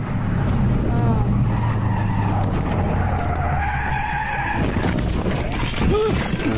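Turbocharged flat-four engine of a 2004 Subaru Forester XT accelerating hard, as heard through a dashcam. About four and a half seconds in, a loud rushing noise of tyres skidding as the car loses control takes over.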